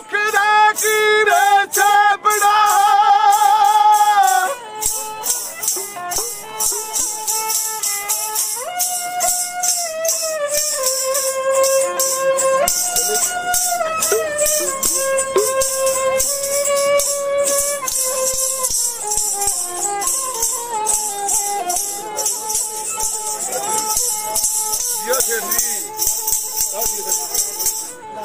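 Punjabi folk music: a man singing with a bowed Punjabi sarangi, while a chimta's metal jingles are shaken in a steady rhythm throughout. A loud held sung note with vibrato fills the first four seconds or so, then a quieter melody moves on in steps.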